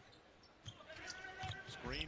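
A basketball dribbled on a hardwood court, heard faintly in the game broadcast: a few bounces starting about half a second in.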